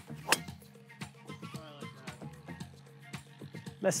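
A golf club striking a ball off the tee: one sharp crack about a third of a second in, heard over steady background music.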